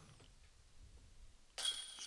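A disc golf putt striking the chains of a metal basket about one and a half seconds in: a sudden metallic jingle of rattling chains that keeps ringing. The jingle marks the putt going in.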